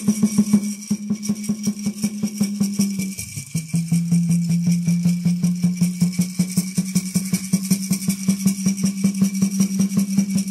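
Peyote-ceremony water drum played in a fast, even beat, with a gourd rattle, between sung verses. The drum's ringing pitch drops slightly about three seconds in and rises back a few seconds later, as the drummer changes the tension on the drumhead.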